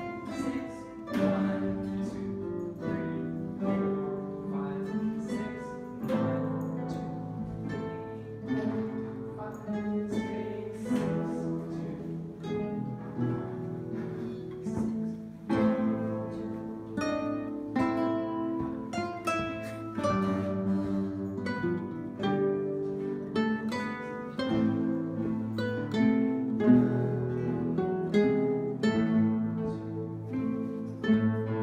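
Nylon-string classical guitars playing a classical-style piece, a steady run of plucked melody notes over chords.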